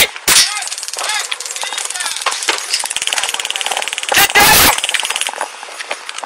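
Taser discharging in a rapid, even crackle of clicks for about five seconds, with loud knocks against the body-worn camera at the start and about four seconds in.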